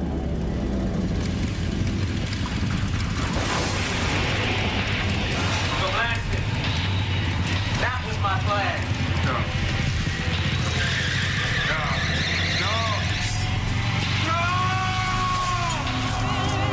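Motorcycle engine held at high revs in a smoky burnout, running steadily, with music and voices mixed over it.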